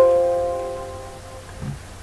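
A computer's notification chime: one sudden, bell-like tone of several pitches at once that fades away over about a second and a half.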